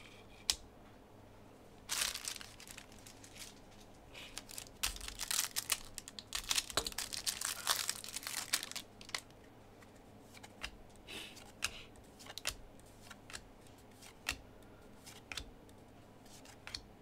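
A stack of trading cards being handled and flipped through by hand: dry rustling, crinkling and light clicks of card and sleeve edges, busiest in the middle, then thinning to scattered clicks.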